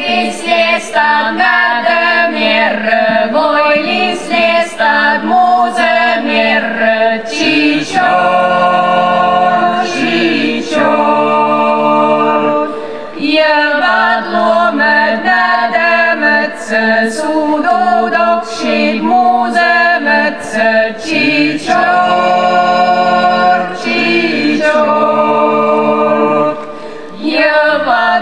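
Mixed folk vocal ensemble singing a Livonian song in several-part harmony, the voices holding long chords in phrases, with short breaths between them about halfway through and near the end.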